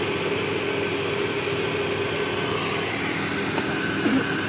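A steady machine hum with a constant low drone and even background noise.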